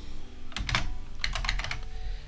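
Keystrokes on a computer keyboard: a handful of quick key clicks in short clusters as a search term is typed.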